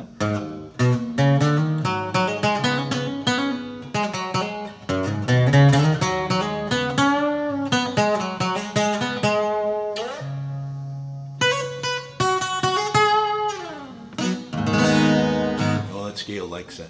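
Steel-string acoustic guitar playing single-note lead lines in the A minor pentatonic scale. About ten seconds in a low note is held, then notes slide down in pitch, and a ringing chord comes near the end.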